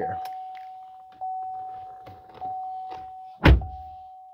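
A 2022 GMC Canyon's warning chime dinging steadily, about once every 1.2 seconds with each ding fading, as the ignition is switched on with the engine off. A single heavy thump about three and a half seconds in is the loudest sound.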